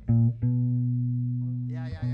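An amplified plucked string instrument noodling on stage between songs. A couple of short low notes are followed by one note held about a second and a half, slowly fading away.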